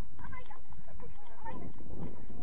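Children's voices shouting and calling out on a football pitch in short scattered bursts, over a steady low rumble.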